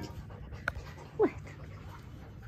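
A fox giving one short whine that drops in pitch about a second in, with a single sharp click just before it.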